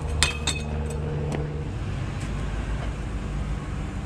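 A vehicle engine idling steadily, with a few sharp clinks and knocks in the first second and a half.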